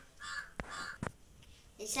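A bird cawing faintly a few times in a pause, with two sharp clicks about half a second and a second in.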